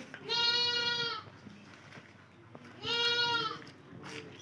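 A goat bleating twice: two high, steady calls of about a second each, some two and a half seconds apart.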